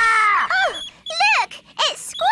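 A cartoon bird character squawking: a longer call trailing off, then a quick run of short cries that each rise and fall in pitch, coming in pairs about half a second apart.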